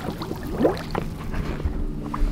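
Water bubbling and splashing as a scuba diver goes under, over a low steady rumble.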